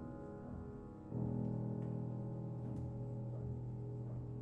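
Solo piano playing slowly: a held chord dies away, then a low chord is struck about a second in and left to ring.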